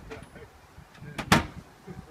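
A sharp knock against a car, with a lighter knock just before it, about a second and a third in, as a man climbs into the driver's seat.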